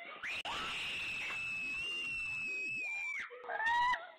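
Girls screaming in fright at a costumed figure that comes to life: one long, high scream lasting about three seconds, then a second, shorter scream near the end.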